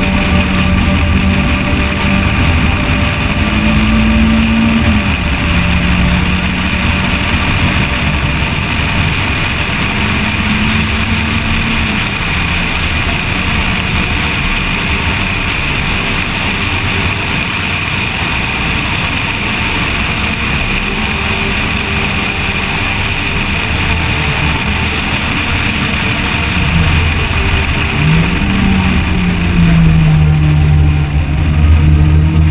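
Peugeot 205 T16 engine running hard on track, its pitch climbing and then dropping several times as it accelerates, shifts and lifts through the corners. Heavy wind and road noise on the outside-mounted camera runs underneath.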